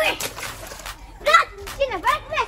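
A plastic toy water blaster splashes into a swimming pool, followed by short bursts of a child's voice, the loudest just past the middle.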